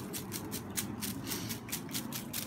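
Folded paper slips tumbling and rustling inside a plastic mesh basket shaken by hand, a rapid run of dry rattles, as the entries are mixed for a drawing.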